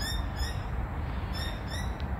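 Birds chirping: short, quick chirps in small clusters about a second apart, over a steady low rumble.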